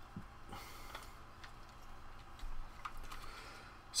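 Faint, scattered light clicks and taps of small parts being handled and fitted on an RC crawler chassis.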